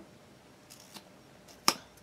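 A mascara wand is pushed back into its tube and snaps shut with one sharp click near the end. The snap-in closure has no screw top. A faint rustle of handling comes before the click.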